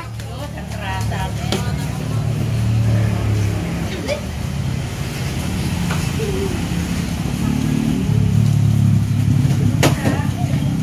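Motor traffic passing on the road beside the eatery: a low engine rumble that swells twice, about a second in and again near the end, with faint voices under it and a sharp click just before the end.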